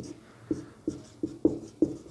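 Marker pen writing on a whiteboard: a quick run of short strokes and taps, about three a second, as the letters are drawn.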